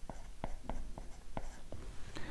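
Stylus writing on a tablet screen: faint scratches with a handful of light taps as each stroke of '2c + 7' is drawn.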